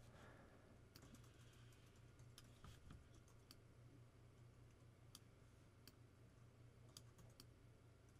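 Near silence: room tone with a steady low hum and about a dozen faint, irregular clicks from a computer mouse and keyboard in use.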